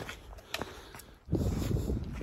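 A few faint footsteps on a dirt trail. A little over a second in, a steady low rumble of wind buffeting the microphone starts abruptly.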